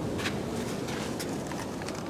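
Steady beach background rush, with a few light taps and scuffs while a takeout box is worked over the sand to scoop up a small crab.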